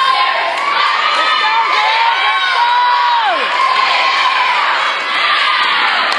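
A crowd of young, high-pitched voices screaming and cheering, with long held screams layered over one another; one scream falls away in pitch about three and a half seconds in.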